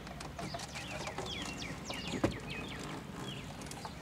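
Small birds chirping in quick, short calls in the background, with one sharp click a little after two seconds in.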